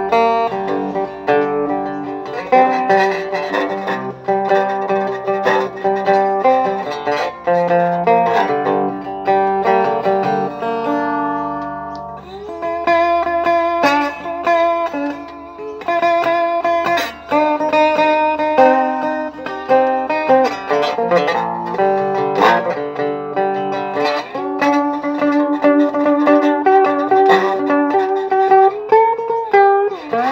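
Metal-bodied resonator guitar fingerpicked with a glass slide, playing a slow melody over ringing chords. Some notes glide up into pitch in the middle and near the end.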